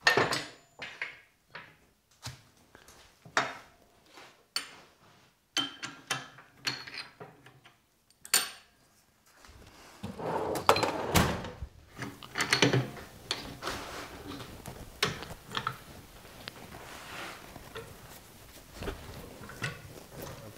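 Metal clinks, knocks and clunks from handling a woodturning lathe's four-jaw chuck and tools while a wooden blank's tenon is set into the chuck jaws. There are separate sharp knocks at first, and from about halfway a low steady background with more knocks over it.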